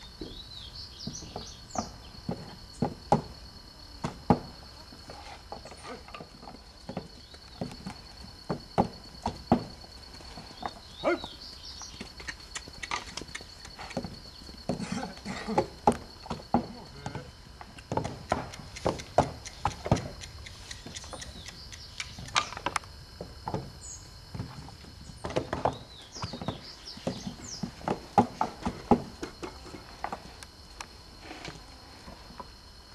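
Irregular knocks and thuds of hand brick-making work, bricks and clay handled on wooden moulds and boards, over a steady high insect buzz with occasional short high chirps.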